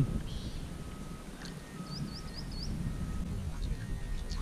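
A small bird gives four quick, rising chirps about two seconds in, over a low rumble of wind and water noise on the microphone.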